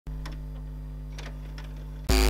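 VHS video recorder running a tape: a steady low electrical hum with a few faint mechanical clicks, one about a quarter of a second in and two more past the one-second mark.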